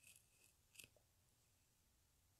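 Near silence: room tone, with two faint, brief hissy ticks, one at the very start and one just under a second in.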